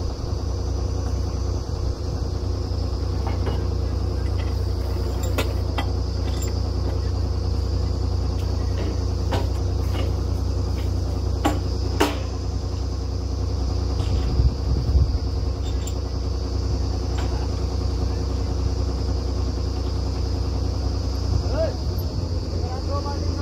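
Truck-mounted borewell drilling rig running steadily, with a loud, even engine hum, and a few sharp knocks from work at the drill head, most of them in the middle of the stretch.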